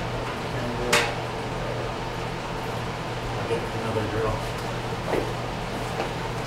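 Tool handling on a shop floor: one sharp clack about a second in, then a few fainter knocks, over a steady low hum of shop ventilation.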